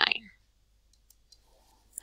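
The last of a spoken word, then near quiet with a couple of faint clicks as digits are handwritten on screen with a pen.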